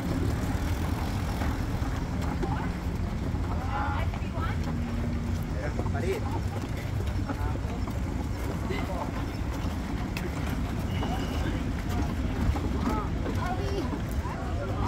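Indistinct chatter of several people nearby over a steady low rumble of outdoor background noise, with no clear words.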